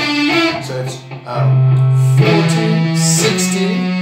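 Electric guitar playing a chromatic finger exercise high on the neck: single notes stepping by semitones, a short dip about a second in, then longer held notes.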